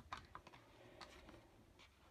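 Near silence with a few faint, light clicks and taps as cardstock is slid into place on a plastic paper trimmer.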